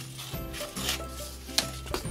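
Scissors snipping through paper a few times, with paper rustling, then a sharper click as the scissors are put down on the table near the end, over soft background music.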